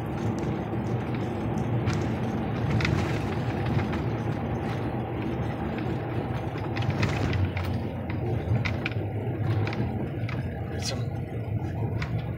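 Car driving, heard from inside the cabin: a steady low rumble of engine and tyres on the road, with a few faint clicks and rattles.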